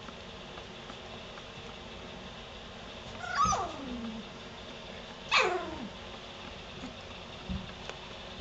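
Three-week-old golden retriever puppy giving two cries while play-wrestling with its littermates, each starting high and sliding sharply down in pitch, about two seconds apart.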